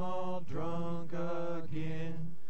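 Jug band music in an instrumental break: a voice-like lead line in short notes, about two a second, over a steady low note.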